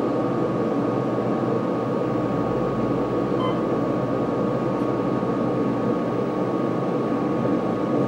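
Otis hydraulic elevator car rising under power: a steady ride hum from the running hydraulic pump, with a thin high whine over it. It runs smoothly, a healthy sound.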